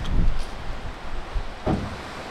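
Wind buffeting the microphone: a gusty low rumble, strongest in the first half second, with a brief noisy gust near the end.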